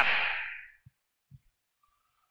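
The last word of a man's microphone voice dies away in the room's reverberation over about half a second. Near silence follows, broken by two faint low thumps about a second in.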